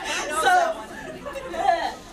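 Several voices talking over one another in a large hall: indistinct chatter rather than one clear speaker.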